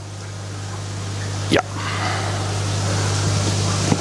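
Steady rushing hiss of heavily aerated koi pond water over a constant low hum of pond equipment, growing slowly louder.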